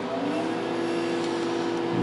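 Cooling fan of a vintage HP sweeper mainframe spinning up just after it is switched on. Its hum rises in pitch over about the first second, then holds steady alongside the hum of the other test equipment.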